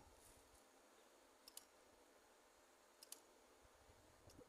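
Near silence, broken by two pairs of faint, short clicks about a second and a half apart.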